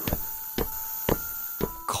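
A short musical sound-effect cue in an animated video: four evenly spaced struck notes, about two a second, with sustained tones ringing between them over a steady hiss.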